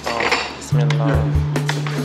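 Metal spoons and cutlery clinking against dinner plates as people eat, with background music whose steady low note comes in under a second in and is the loudest thing heard.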